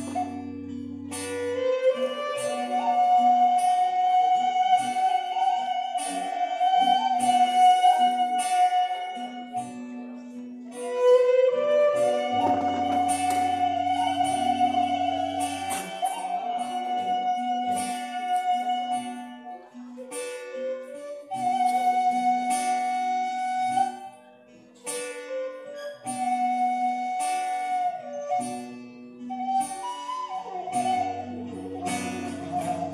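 Live acoustic ensemble music with violin and acoustic guitar: a slow melody in long held notes, each phrase sliding up at its start, over guitar accompaniment and occasional low bass notes.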